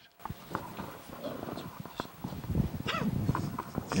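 Microphone handling noise: irregular knocks and rustling as hand-held microphones are lowered and picked up, with a few faint off-mic voices near the end.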